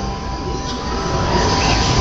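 Honda ASIMO humanoid robot's joint motors whirring as it turns and starts to walk: a steady low rumble with a thin, even whine that stops just before the end.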